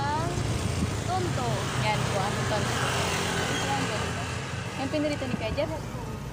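Motorcycle tricycle's engine running at a steady low hum, with many short high chirping calls over it.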